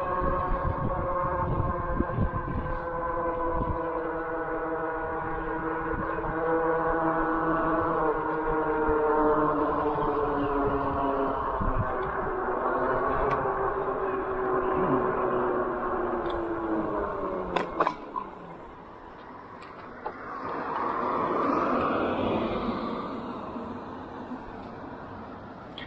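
EUY K6 Pro e-bike's 1000-watt electric motor whining under power, its pitch slowly falling as the bike slows from about 22 mph, over wind rumbling on the microphone. The whine dies away after about 17 seconds with a couple of sharp clicks, and a brief swell of rushing noise follows near the end as the bike rolls to a stop.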